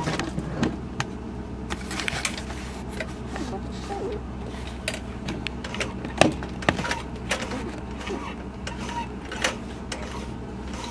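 Vintage Singer slant-shank sewing machine worked slowly by hand at the handwheel on a zigzag stitch, its needle and mechanism giving irregular clicks and knocks as it sews a button on through a button foot, over a steady low hum.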